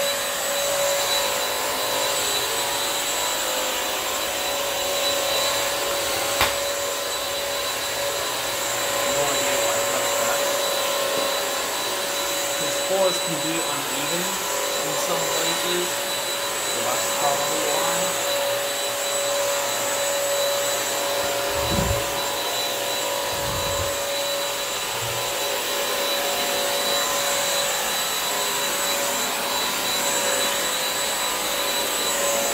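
Bissell CrossWave wet-dry mop vac running steadily over a tile floor, its motor giving a constant whine over the rush of suction, with a couple of brief knocks.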